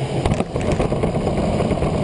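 A vehicle engine running loud and rough, with scattered rattling clicks, cut in and out abruptly as an edited sound.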